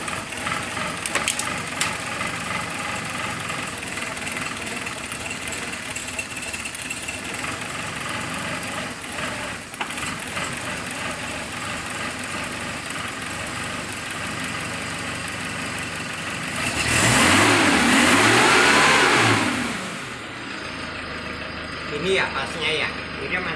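Suzuki Katana (Jimny) four-cylinder petrol engine idling steadily while its distributor and plug leads are worked on to set the ignition timing after a timing belt change. A few light clicks come in the first couple of seconds. About 17 seconds in, the engine is revved up and back down over roughly three seconds, then settles back to a quieter idle.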